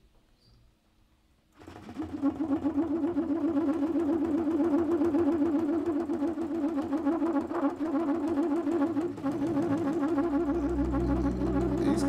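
Trumpet comes in suddenly about a second and a half in, holding a rapidly wavering, trilled low note. A deep bass joins near the end.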